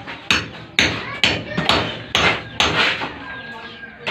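Hand hammer striking hard masonry or metal, about seven blows in four seconds, unevenly spaced, each with a short ring after it.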